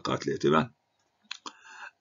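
A few quick, sharp clicks a little over a second in, followed by a faint short stretch of low noise.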